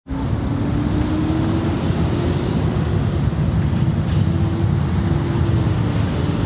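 Steady outdoor vehicle noise: a low rumble with a faint, steady engine hum that rises slightly in pitch.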